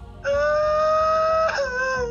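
A boy letting out one long, loud wail in an emotional outburst. It rises slightly in pitch, then breaks and falls near the end, and is heard through a phone's speaker on a video call.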